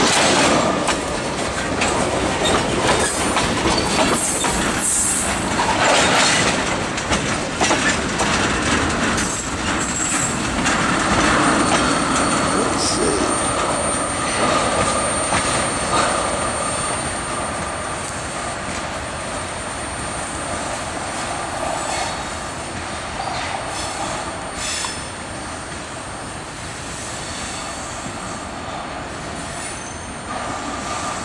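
Freight train tank cars rolling by on jointed siding rail, wheels clicking over the rail joints with a thin wheel squeal at times. The noise fades slowly as the cars move away.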